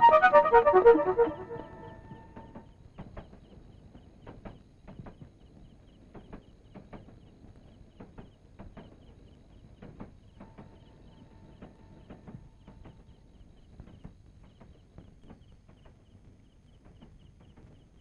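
Suspense film score: a loud run of notes stepping downward in the first second or so, then a long quiet stretch of faint scattered ticks with a faint held note about ten seconds in.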